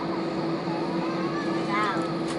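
Airbus A320 cabin noise while taxiing: a steady hum of the engines at idle, with a constant low tone running under it.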